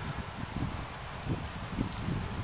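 Steady outdoor background noise, a soft even hiss with low irregular rumbles of wind on the microphone.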